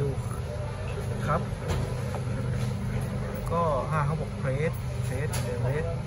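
A person's voice speaking over a steady low hum. Short higher-pitched vocal sounds come a few seconds in.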